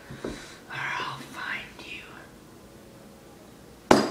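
A person whispering briefly, followed by a sudden loud burst of sound right at the end.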